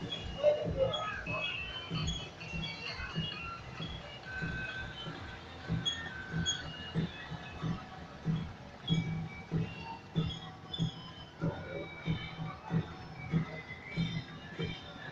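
Procession music: a regular low drum beat of about two strokes a second, with short scattered high notes above it.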